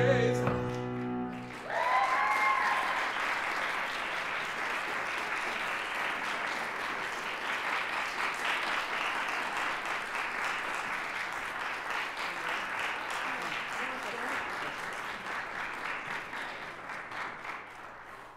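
A tenor's held final note and the piano's closing chord die away in the first second or so. Then audience applause breaks out, with a shout near the start, and runs on steadily, tapering off near the end.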